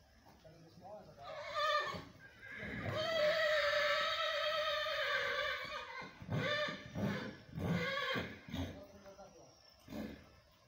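A horse whinnying: a long, wavering, high call, followed by a string of shorter calls that trail off near the end.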